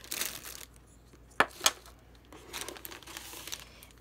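Plastic packaging crinkling as it is handled and pulled open, with two sharp clicks about a second and a half in.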